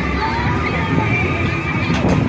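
Carnival midway din: crowd voices over ride machinery, with high wavering cries above them.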